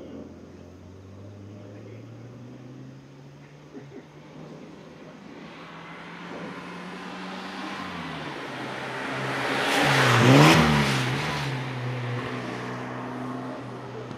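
Classic Mini's A-series four-cylinder engine revving as the car drives the course: the note eases off around eight seconds in, then picks up again. The car passes close about ten seconds in, at its loudest, with the pitch dropping as it goes by, then pulls away. Tyre noise on the wet tarmac rises with the pass.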